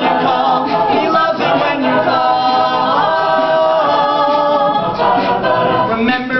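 Mixed a cappella group singing a pop song live, several voices holding chords in close harmony with no instruments.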